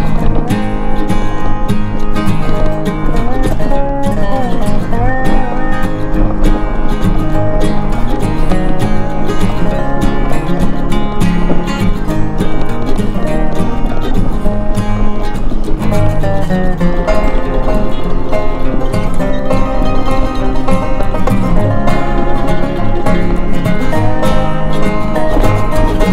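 Background music with plucked acoustic strings and a steady, lively beat.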